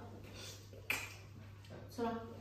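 Quiet room tone with a faint steady hum, broken by one sharp click about a second in.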